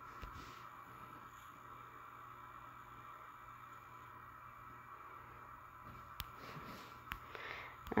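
Faint room tone with a steady low hum. A few soft clicks come in the last two seconds.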